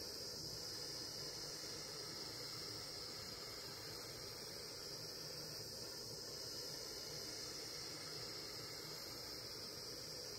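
Butane micro torch flame hissing steadily as it heats a coil of 18 gauge copper wire to anneal it.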